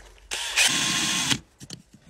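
Cordless drill running in one burst of about a second, spinning a screw to clean the rust off it, then a few faint clicks as it stops.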